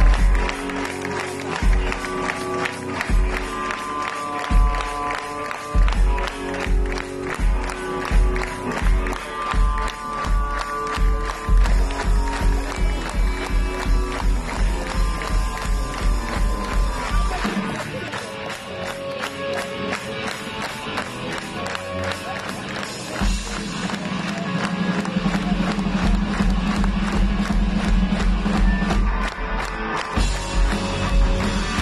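Live rock band playing on stage, heard from within the audience: electric guitars and bass over a steady kick-drum beat. The kick drum drops out for a few seconds past the middle, under held guitar and bass notes, then comes back in.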